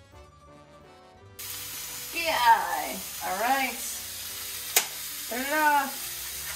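Background music for about the first second and a half, then a chicken breast sizzling steadily in hot oil in a frying pan. Three loud pitched sounds that slide up and then down over it, and a single sharp click a little before the end.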